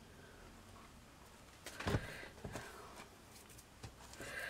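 Quiet handling sounds as lace trim and a board are worked by hand: a few short clicks and knocks, the loudest just under two seconds in, with smaller ones after it.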